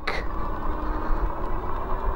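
Wind rumbling on the microphone and 20-inch fat tyres rolling on pavement as a fat-tyre electric bike accelerates, with a faint steady whine from its 500 W hub motor.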